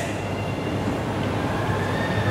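Steady room noise with a low hum, over which a marker writes briefly on a whiteboard with faint squeaks.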